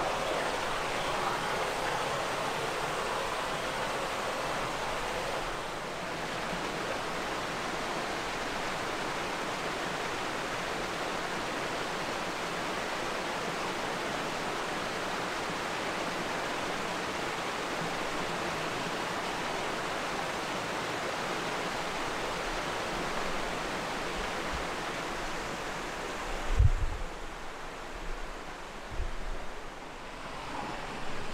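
Small waterfall splashing over rocks into a forest stream: a steady rush of falling water. Near the end the rush drops back and a few dull low thumps come through, the loudest about three seconds before the end.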